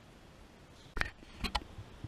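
Faint room noise, then about a second in a sharp click, followed by two more quick clicks or knocks close together.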